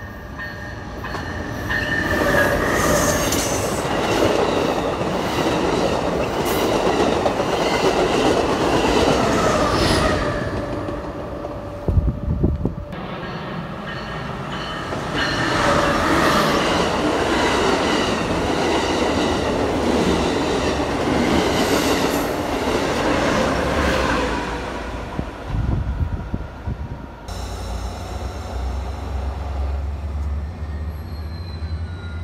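Diesel-hauled passenger trains passing close by at speed: engine noise with the rattle and clatter of wheels on the rails, in two loud passes. A few sharp knocks come between the passes, and a steady low rumble sets in near the end.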